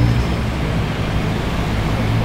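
Steady road traffic noise, with a vehicle's low engine drone that fades away just after the start.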